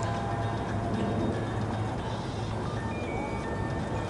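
Quiet music of a few held, sustained tones over a steady low hum.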